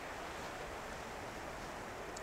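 Faint, steady outdoor background hiss with no distinct sounds in it.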